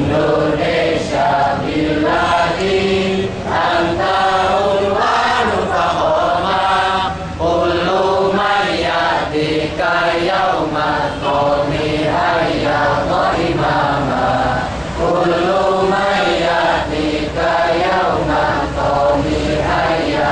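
A large group of students singing a song together in unison, in long held phrases with brief pauses between lines.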